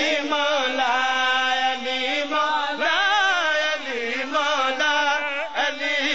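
A man chanting a melodic religious recitation into a microphone, with long wavering held notes over a steady low tone.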